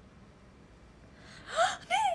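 Low room tone, then about a second and a half in a woman's loud breathy gasp rising in pitch, followed at once by a second voiced burst as she starts to laugh.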